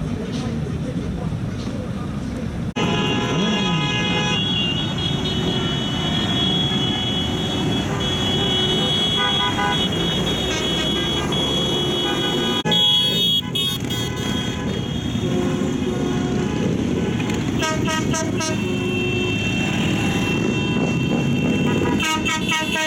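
Many vehicle horns sounding together in a long, steady chorus over the engine and traffic noise of a passing column of cars and motorcycles. The sound breaks off abruptly and resumes about 3 and 13 seconds in.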